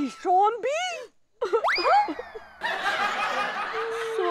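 Comic sound effects of a TV sitcom: a few short sliding squeaks, then a whistle-like 'boing' that shoots up in pitch and slides slowly down. After it comes a burst of canned laughter for the last second or so.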